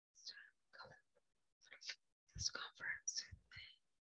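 Faint whispered speech: a few short, breathy phrases spoken under the breath.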